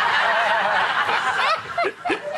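A studio audience laughing together, many voices at once, dying away about one and a half seconds in.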